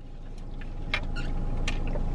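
Close-miked mouth sounds of someone eating: chewing, with a few soft, short clicks. A steady low hum from inside the car lies beneath.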